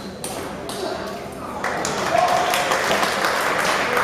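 Table tennis ball struck twice in the closing shots of a rally, sharp pings of the ball on paddle and table. About a second and a half in, spectators break into clapping and calling out over the won point, which is the loudest part.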